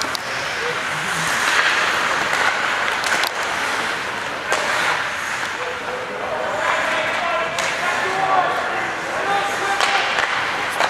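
Ice hockey game in a rink: spectators and players shouting and calling out over a steady crowd hubbub, with a few sharp knocks of sticks, puck or bodies against the boards.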